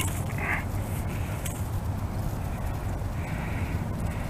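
Faint rustling and crackling of dry leaves as a small pike flops and is handled on the ground, with a few small clicks, over a steady low rumble.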